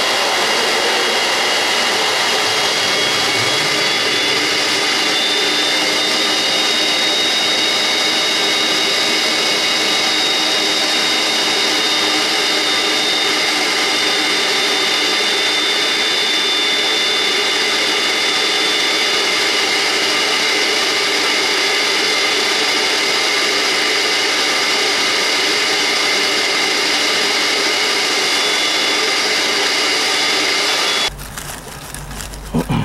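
Bucket-top wet/dry vacuum running steadily, sucking out a one-inch steam-boiler condensate line through its hose. Its high motor whine rises slightly about five seconds in.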